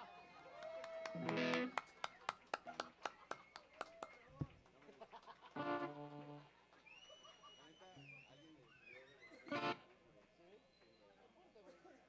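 A quiet lull between songs: the band's electric guitars let a few scattered notes and chords ring out, about a second in, near six seconds and near ten seconds. Between the first two, sparse handclaps come from a small audience, and later there are a few high wavering tones.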